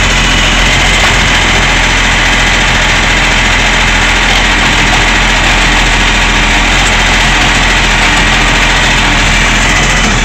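Side-loader garbage truck's diesel engine running steadily and loudly at close range while the hydraulic arm lifts a wheelie bin, tips it into the body and lowers it again.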